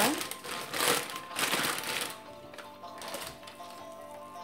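A thin plastic bag crinkling in several short bursts while minced-meat filling is spooned into it, over background music with held notes.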